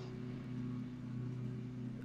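Faint, steady low hum with no speech: background hum on the recording.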